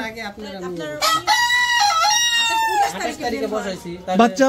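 A caged desi (native Bangladeshi) rooster crowing once: a single long, fairly level call of about two seconds, beginning about a second in.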